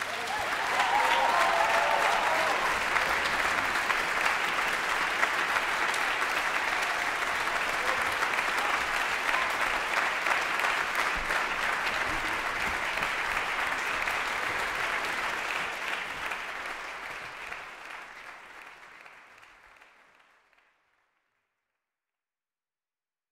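Concert hall audience applauding at the end of a viola and cello duo, steady clapping that fades out over the last few seconds.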